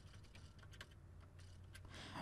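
Faint computer keyboard keystrokes, a few irregular clicks, as a password is typed, over a low steady hum.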